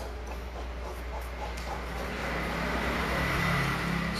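Workshop car lift's motor running: a steady mechanical whir with a hiss that grows louder over the last two seconds.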